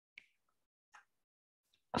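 Quiet pause broken by two faint, short clicks, one about a fifth of a second in and a fainter one about a second in. A woman's voice starts right at the end.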